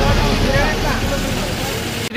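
Roadside hubbub: bystanders' voices over steady traffic and engine noise.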